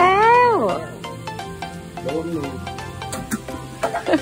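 A high-pitched, drawn-out vocal exclamation that rises and falls in pitch during the first second, over steady background music, with two short sharp clicks about three seconds in.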